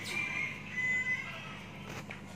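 A few short, high-pitched bird calls, two clearer ones in the first half, over a faint steady low hum.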